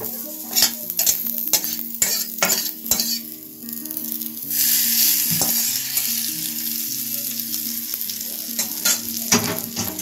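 Hot tempering of mustard oil, dried red chillies and curry leaves in a steel kadai, with sharp metal clicks and clinks as the pan is handled. About four and a half seconds in, a loud sizzle starts as the hot oil is poured onto green coconut chutney, then slowly dies down.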